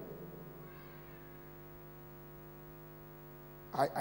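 Steady electrical mains hum from the microphone and sound system, with a faint higher sound about a second in. A man's voice comes in at the very end.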